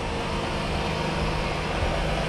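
A steady low hum with a rumble beneath it, even throughout, with no distinct knocks or other events.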